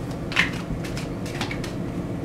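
A deck of oracle cards being shuffled by hand: a run of irregular soft card slaps and rustles, the strongest about half a second in.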